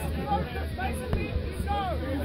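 Overlapping voices of players and spectators chattering and calling out across a sports field, with no single clear speaker, over a steady low rumble.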